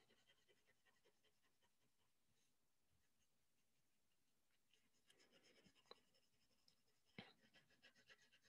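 Near silence, then faint scratching of a colored pencil shading on paper in the second half, with a couple of light ticks.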